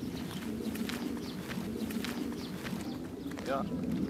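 Low, indistinct men's voices in the open air with scattered light clicks, and a man saying "yeah" near the end.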